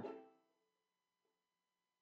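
Near silence: a voice trails off in the first moment, then the sound drops almost to nothing, with only a very faint steady tone left.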